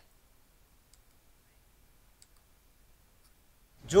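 Near silence, broken only by a few faint clicks; a man starts speaking right at the end.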